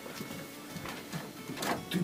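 Quiet background music, with a few soft knocks and rustles near the end.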